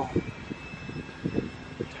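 Steady low outdoor background rumble like distant traffic or an aircraft, with a couple of faint short sounds, one just after the start and one in the middle.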